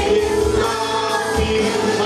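Christian worship song sung by a group of amplified voices, a woman leading and other singers joining, over keyboard accompaniment with a steady low beat.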